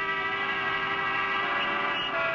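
Many car horns sounding together in a traffic jam, a steady held chord of overlapping horn tones.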